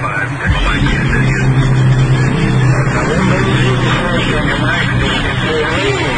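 People's voices over a steady low mechanical drone.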